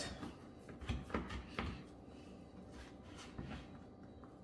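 Large Victorinox knife slicing through a cold slab of homemade bacon on a cutting board, the blade knocking softly against the board a few times a second or so in and once more near the end.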